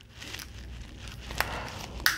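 Plastic Transformers Leader class figure (Kingdom Megatron) handled and moved during transformation, with faint rustling of plastic parts and a single sharp click about a second and a half in.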